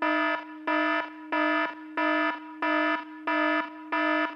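Electronic emergency alarm sound effect: a pulsing, many-toned alarm sounding about one and a half times a second over a steady lower tone.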